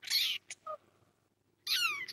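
Young kitten mewing: a short high-pitched mew at the start, two brief faint squeaks after it, and a second loud mew near the end that falls in pitch.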